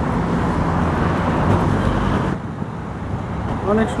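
Loud outdoor background noise with a low rumble, typical of traffic or wind on the microphone, that drops off abruptly a little over halfway through; a man starts speaking near the end.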